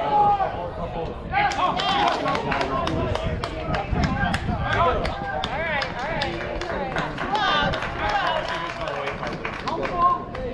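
Baseball spectators and players shouting and cheering, with many hand claps, picking up about a second in.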